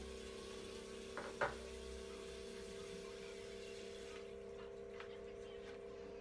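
Quiet room tone with a steady electrical hum. A brief soft knock comes about a second and a half in.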